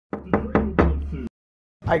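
Four quick, sharp knocks in the first second, then the sound cuts off suddenly.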